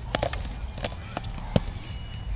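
Padded LARP swords striking each other and the shields in free sparring. A quick cluster of sharp knocks comes right at the start, then scattered single hits, the sharpest about a second and a half in.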